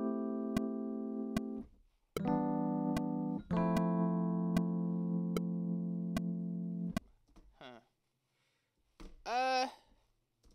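Sustained chords played on a MIDI keyboard through a software instrument, three long chords in turn, the last stopping about seven seconds in. A metronome clicks at 75 beats a minute throughout.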